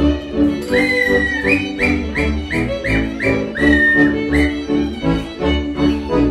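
Live folk string band playing a lively dance tune: a fiddle melody of short high notes, each sliding up into pitch, over a steady pulsing double-bass beat.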